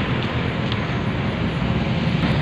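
Steady outdoor noise with a heavy, fluttering low rumble and a broad hiss, with no distinct events.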